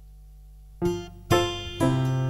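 Opening of an acoustic children's song: a plucked string instrument begins about a second in, picking single notes roughly twice a second. Before it starts there is only a faint steady hum.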